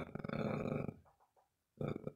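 A man's voice in a drawn-out, creaky hesitation sound lasting about a second, then a short pause and a brief "uh" near the end.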